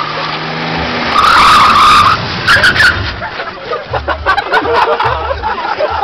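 A car's engine revs up as it approaches, then its tyres squeal for about a second as it skids to a stop. Sharp knocks and voices follow.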